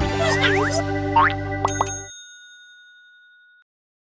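Short cartoonish logo jingle: bright music with quick sliding pitch sweeps, then two quick dings about a second and a half in. Their ringing fades out well before the end.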